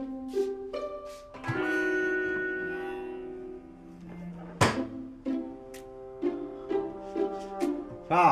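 Light background score of plucked strings, pizzicato style, with a held string chord early on. A single sharp click comes a little past halfway.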